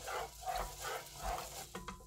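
Rice being rinsed: a plastic rice paddle stirring raw rice in cloudy water inside a rice cooker's metal inner pot, giving a rhythmic swishing and sloshing, about two to three strokes a second, with a few light clicks of the paddle against the pot near the end.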